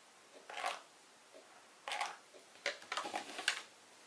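Rustling and scraping of a small canvas and craft materials being handled and turned on a wooden tabletop: a few short bursts, with a quick cluster near the end.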